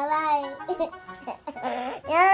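A toddler's drawn-out high-pitched vocal squeal that bends in pitch and trails off about half a second in, followed by short, softer vocal sounds.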